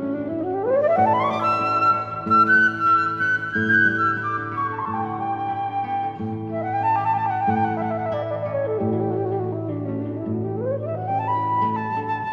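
Transverse flute playing sweeping runs up and down its range, over a low acoustic guitar accompaniment of held, repeated notes, in an improvised guitar-and-flute duet.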